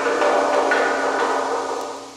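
An eerie held chord of several steady tones in the séance background music, fading away near the end.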